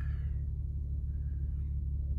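2013 Audi S4's supercharged 3.0-litre V6 idling, a steady low hum heard inside the cabin.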